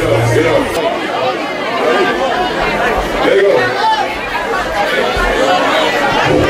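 Many people talking at once in a crowded room, a loud jumble of overlapping voices. Low bass thumps are heard at the start and once more near the end.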